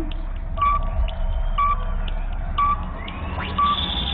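Electronic launch sound effect played over the venue's sound system when the start button is pressed: a low drone with a short high beep about once a second, four times, and a rising sweep near the end.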